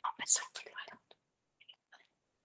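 Soft, whispered speech for about the first second, then near silence.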